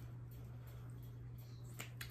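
A single sharp plastic click near the end as a mascara tube is handled, over a low steady hum.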